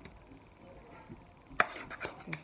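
Faint handling sounds, then one sharp knock about a second and a half in, followed by a few lighter taps: a plastic measuring cup being tapped and scraped with a spatula to empty the last chickpea flour into a glass bowl.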